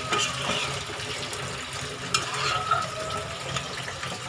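Chicken roast gravy simmering in an aluminium pot on a gas stove, with a watery bubbling and one sharp clink about two seconds in.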